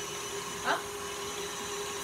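Electric stand mixer running steadily with a constant motor hum as it kneads a soft whole-wheat bread dough.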